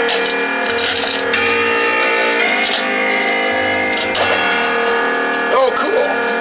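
Music played loud through a small full-range Technics bookshelf speaker, with sustained plucked-string notes and almost no bass below the driver's range.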